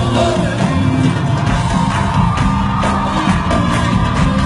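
Live Arabic pop band with a drum kit keeping a steady beat and a male vocalist singing into a microphone, heard from among the audience, with crowd voices and whoops mixed in.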